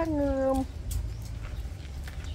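A puppy whining: one drawn-out cry that falls slightly in pitch and stops about two-thirds of a second in, followed by a few faint clicks.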